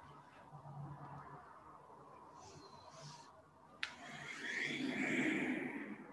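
Faint rustling of a person shifting her body on a yoga mat, with one sharp click a little after the middle and a soft rush of breath or fabric noise over the last two seconds as she lowers into child's pose.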